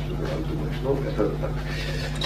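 A person speaking briefly in a room, over a steady low hum.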